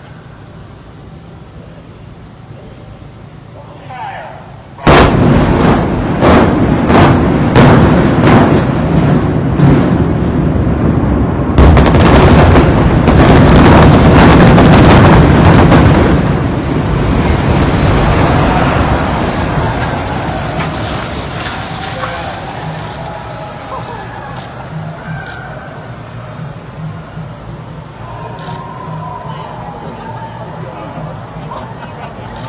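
Building implosion: about five seconds in, the demolition charges go off as a rapid string of sharp blasts, about two a second. A second dense volley about eleven seconds in runs into the heavy rumble of the multistory building collapsing, which slowly dies away.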